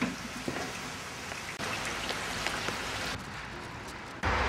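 Steady background hiss with a few faint ticks, a little louder for a stretch in the middle.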